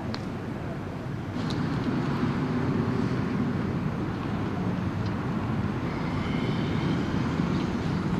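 Steady low rumble of a motor vehicle moving across the ground, with a few faint, sharp distant cracks, about one every couple of seconds.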